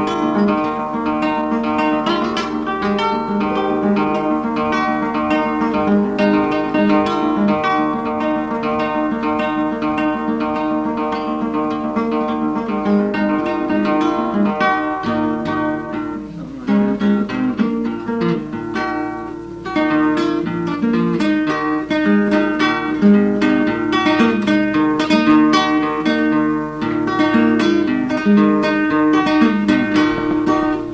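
Acoustic guitar played alone with no singing, an instrumental passage in a steady strummed and picked rhythm. A faint steady low hum runs beneath it, and it dips briefly twice past the middle.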